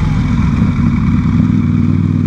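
Motorcycle engine running steadily at low road speed, its low hum mixed with wind and road noise.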